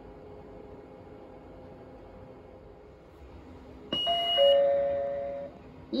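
JR West Techsia SG70 simple IC card gate reader sounding its error chime about four seconds in: a brief high tone with two falling notes, lasting about a second and a half. The chime marks the card being rejected on the exit side right after entering, an exit-at-boarding-station error.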